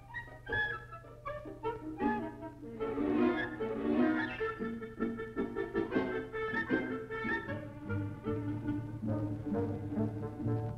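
Orchestral background music, with bowed strings and brass playing a moving melody.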